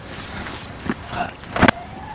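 Steady outdoor background noise with two knocks: a light one a little under a second in and a sharper, louder one about a second and a half in.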